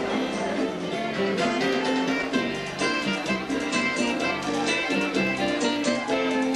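Dance music played by a band, led by guitar over a steady beat.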